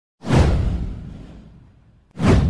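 A whoosh sound effect with a deep low boom. It starts suddenly a moment in, sweeps down in pitch and fades away over about a second and a half.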